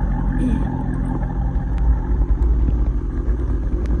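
Dodge Charger Widebody's V8 idling with a steady low rumble.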